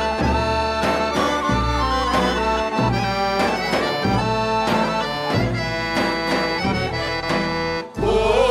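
Bulgarian-style folk dance tune (horo) played on accordion over a steady drum beat, with held melody notes; the music dips briefly just before the end.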